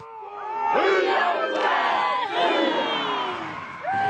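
A large group of voices shouting and calling out together, as in a haka performed by the mourners. It swells over the first second, stays loud, and eases off near the end.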